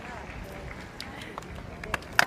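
Murmur of distant voices in a large sports hall, with a few short sharp clicks in the second half.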